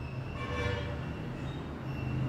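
Steady low rumble of a distant vehicle, with a faint high tone about half a second in.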